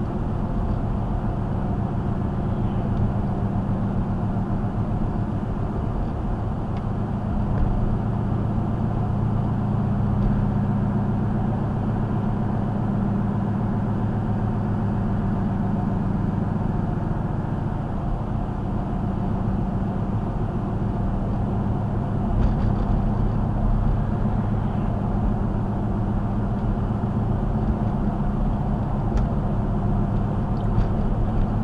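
Steady in-cabin road and engine noise of a car cruising at about 40 mph: a constant low drone with tyre hum that does not change in level.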